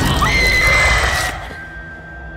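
Horror trailer score and sound design: a dense, screeching climax with a high shrill cry that cuts off abruptly about a second and a half in, leaving a low rumbling drone.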